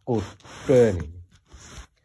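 A man's voice telling a story in Karen, in two short phrases with a rising and falling pitch.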